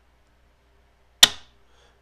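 A single sharp metallic click from a mil-spec AR-15 trigger group as the held-back trigger is eased forward and resets: the hammer passes from the disconnector back to the trigger sear.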